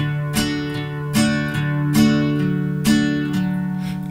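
Nylon-string classical guitar played with a pick in a simple boom-chick pattern: a bass note, then a short downstroke on three treble strings, repeating evenly about every 0.8 s. Partway through, the bass moves to a different note.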